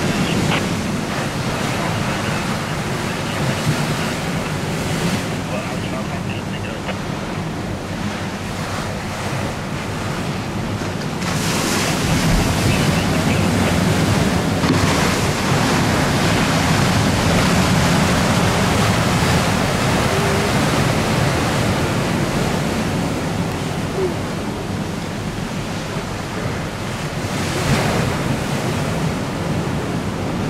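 Wind buffeting the microphone over choppy, whitecapped river water, a steady rushing noise that grows louder about eleven seconds in and eases again after about twenty seconds.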